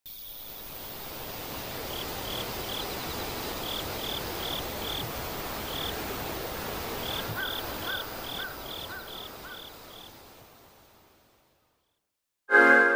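Outdoor nature ambience fading in and then out to silence near the end: a steady rushing noise with runs of short, evenly spaced chirps, about three a second, from a small animal. Around seven seconds in, a lower series of five short notes joins them.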